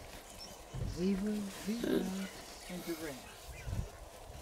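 A person's voice making two short murmured sounds at one low pitch, about one and two seconds in, then a few brief softer fragments.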